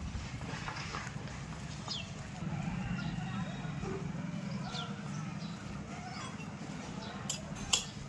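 Outdoor street background with faint distant voices over a low steady hum, then a few sharp clinks near the end.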